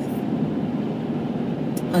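Steady low hum inside a car's cabin, the car's engine running.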